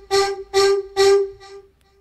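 Distorted vocal-like synthesizer patch playing the same note three times, about two notes a second, the last one fading out near the end. The sound is made louder and more distorted by a wave shaper and an overdrive.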